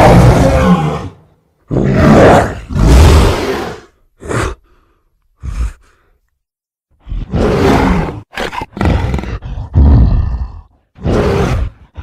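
Giant-ape creature sound effects, mixed from film monster roars: a long roar fading out about a second in, then a string of shorter roars and calls with a short silence near the middle.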